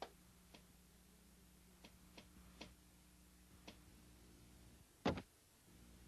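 Faint scattered clicks, about six in the first four seconds, then a louder knock about five seconds in, over a faint low steady hum.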